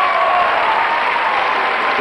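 Large live audience applauding steadily, with a faint held tone underneath that fades near the end.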